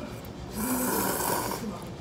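A man slurping hot noodles into his mouth in one loud slurp lasting about a second, starting about half a second in.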